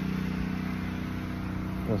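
Soft-wash rig's engine-driven AR45 pump running at a steady speed, a constant even hum.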